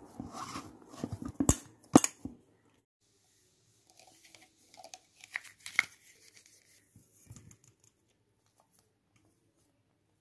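Hands kneading soft rice-flour dough in a steel vessel: a run of sharp knocks and wet handling noises in the first two seconds or so. After a short silence come fainter clicks and rubbing as oiled fingers work over a plastic kolukattai mould.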